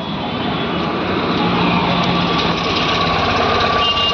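Tata Nano's small rear-mounted two-cylinder petrol engine idling steadily, running again after a faulty main relay was replaced.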